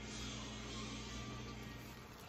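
Faint steady low hum with a soft hiss under it, the background tone of a kitchen. The hum stops shortly before the end.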